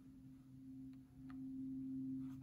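A steady low hum, with a faint click a little over a second in.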